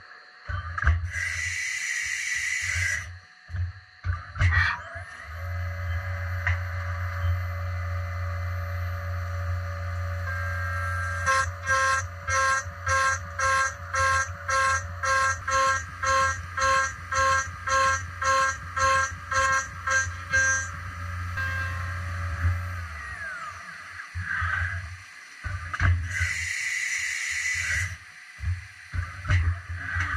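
Haas CNC mill spindle spinning up with a rising whine, running steadily under flood coolant spray, then winding down with a falling whine near the end. Midway the cutter pulses in and out of the aluminium part about twice a second for around ten seconds.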